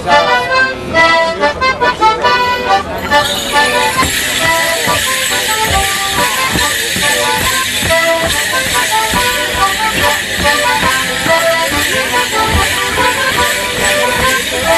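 A morris dance tune played on a squeezebox, with the dancers' leg bells jingling and their feet stepping on the wooden stage from about three seconds in.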